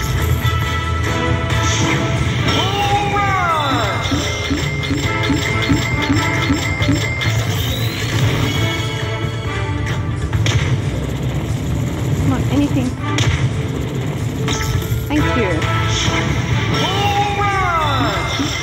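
Poker machine bonus-round music and sound effects from a Konami 'Bull Rush' game, with a descending sweep about three seconds in and again near the end as the reels respin. Underneath is steady club background noise with voices.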